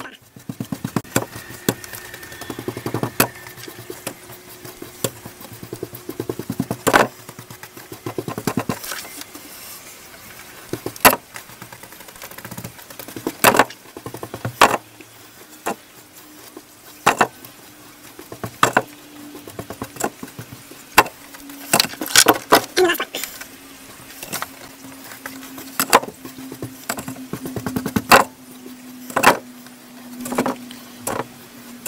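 A paintbrush dabbing and stippling resin into fibreglass mat on a car's metal floor pan: irregular soft dabs and sharp taps, some louder knocks, at uneven intervals.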